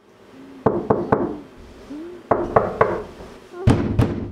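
Knuckles knocking on a wooden door: three quick knocks about half a second in, three more a little past two seconds, then a louder thump near the end.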